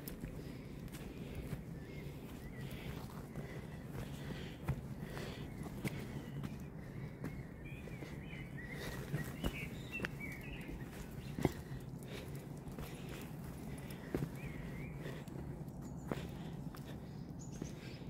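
Footsteps on rock and grass, scattered irregular steps and scuffs over a steady low background noise.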